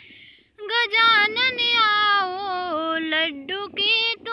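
A woman singing a Ganesh bhajan with no accompaniment, in a high voice with long held notes ornamented by small turns. There is a brief pause for breath at the start.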